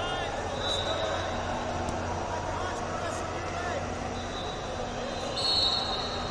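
Voices and general hubbub in a large, echoing indoor hall, with a whistle sounding briefly about a second in and again, longer and louder, near the end.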